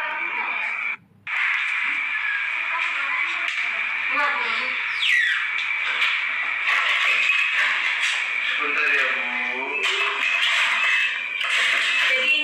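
Mostly speech: voices talking over a steady high-pitched tone, with a brief dropout about a second in.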